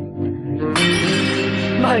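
Anime soundtrack: background music, joined about three-quarters of a second in by a sudden bright, shattering sound effect that rings on, with a voice starting near the end.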